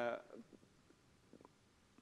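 A man's drawn-out "uh" trailing off, then near silence: a pause in a lecture with only a few faint small clicks.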